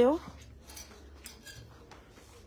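A woman's voice breaks off at the start, then faint rustling and light scraping of garments and hangers being moved along a clothes rack.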